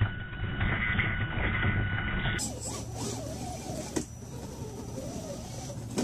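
Scale RC rock crawler's brushed electric motor and gear drivetrain whining as it creeps over rock, the whine's pitch wavering up and down with the throttle. A couple of sharp clicks, one about four seconds in.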